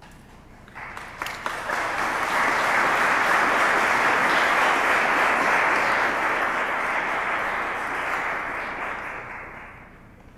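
Audience applauding: the clapping starts about a second in, builds quickly to a full, steady round, then dies away near the end.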